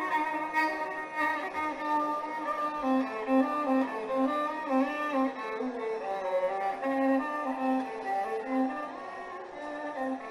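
Carnatic violin playing a melodic phrase of held notes joined by sliding pitch ornaments (gamakas).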